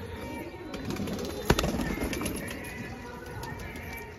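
Pigeons cooing in a loft, with a single sharp knock about one and a half seconds in.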